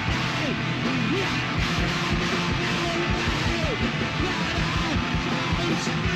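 Live rock band playing: electric guitars over a drum kit, loud and continuous, with frequent drum hits and sliding guitar notes.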